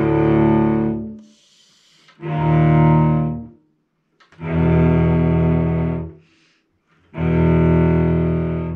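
Cello bowing fifths as double stops, one finger laid across two strings: four separate sustained strokes, each a second or so long with brief pauses between, the last running on past the end.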